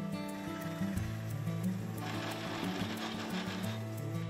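Background music with steady plucked notes. About two seconds in, a machine boring noise rises over it for nearly two seconds: a lathe-driven bit cutting into a block of fossil wood.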